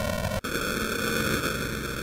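Loud, steady static-like electronic noise with a brief cut-out about half a second in, part of an edited-in electronic music track.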